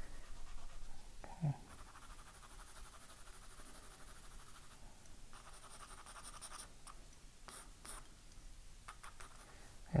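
Graphite pencil scratching on drawing paper in faint shading strokes, a little louder in the first second.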